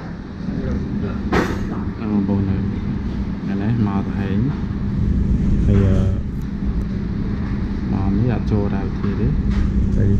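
People talking in a café, their voices over a steady low hum.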